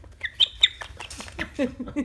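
A pet parrot gives a few short, high chirps, two of them sharp and loud about half a second in. Then a woman starts laughing.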